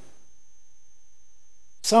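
A pause filled only by a faint, steady electrical hum with a thin high-pitched whine. Near the end a man starts speaking.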